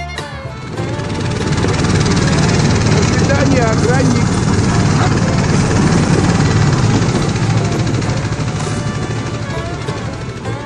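Small engine of a motorized snow tow running hard while it pulls a sled over a packed snow track, with a loud steady drone. The drone swells in over the first couple of seconds and eases off near the end.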